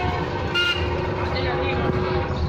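Busy street traffic heard from an open-sided vehicle, with a short vehicle horn toot about half a second in and voices around.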